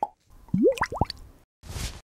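Cartoon-like logo-animation sound effects: a few quick pops that swoop upward in pitch, about half a second in, followed by a short burst of noise near the end.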